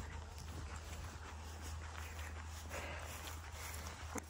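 Faint footsteps on grass, a few soft irregular steps, over a steady low rumble of wind on the phone microphone.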